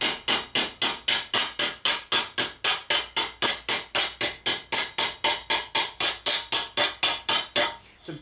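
Steady, rapid hammer taps on a sheet-steel armour piece held over a steel stake, about four light blows a second, each with a short metallic ring: planishing a small divot out from the inside with gentle, even blows.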